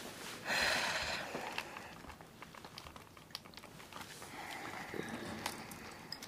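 Faint, irregular small clicks of a cordless phone handset being handled and its keys pressed while dialling. A short breathy hiss comes about half a second in.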